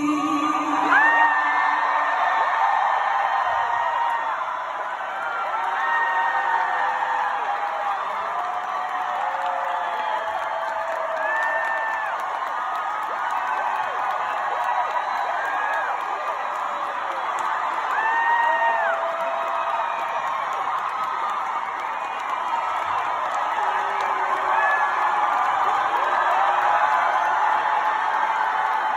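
Large concert audience cheering and screaming after a song ends, with many high individual whoops and screams rising over the steady crowd noise throughout. The crowd is calling for more.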